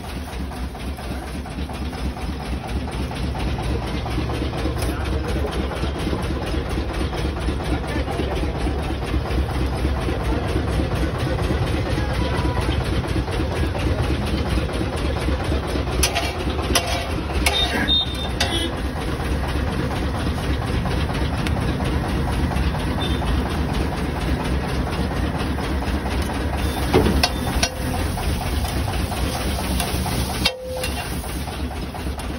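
Steady low roar of the gas burner under a large flat iron griddle, growing a little louder over the first few seconds. A steel spatula clicks and scrapes on the griddle a few times in the middle and again near the end.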